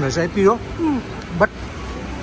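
Speech only: a person talking in short phrases with brief pauses, with no other sound standing out.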